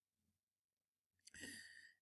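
Near silence, then a faint intake of breath a little past the middle, drawn by the narrator before speaking again.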